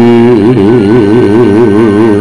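A man's voice holds one long, loud sung note with a wide, quick waver in pitch, cutting off after about two seconds, with the gamelan faint beneath it.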